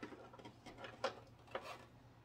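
A few faint plastic clicks and taps as a Barbie doll is shifted in the seat of a plastic Corvette popcorn bucket.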